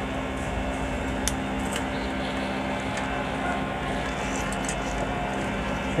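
A steady low background hum with a couple of faint clicks about one and a half seconds in.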